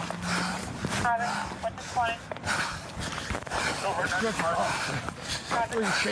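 Men's voices talking indistinctly in short bursts, with a low steady hum in the first second and a half.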